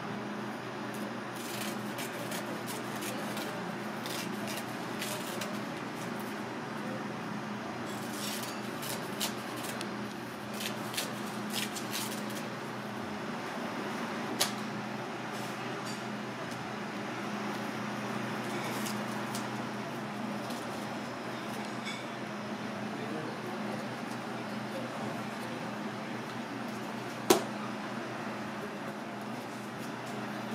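Kitchen scissors snipping through a sheet of dried nori seaweed in the first few seconds, a run of short crisp cuts, over a steady low hum. More light clicks follow a few seconds later, and a single sharp knock near the end is the loudest sound.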